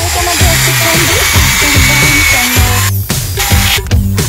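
Cordless drill running as it bores into packed garden soil, a steady whirring that stops about three seconds in, under loud background music with a beat.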